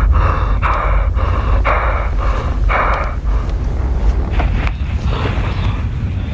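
Horror film trailer soundtrack: a loud, deep, steady rumble under a run of short rasping bursts, about two a second, that grow fainter toward the end.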